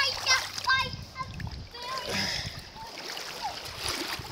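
Water splashing in a shallow, running stream, with a small child's high voice calling out briefly a few times in the first two seconds.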